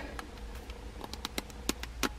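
Light, irregular clicks and taps of small plastic makeup packaging being handled, a few a second, with two sharper clicks in the second half. A faint steady hum sits underneath.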